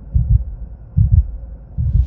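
Intro sound effect of deep, heartbeat-like bass thumps: three double beats, a little under a second apart.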